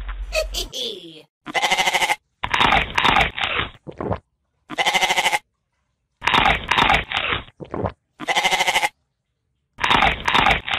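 Goat-like bleating: five wavering calls of about a second each, roughly a second apart.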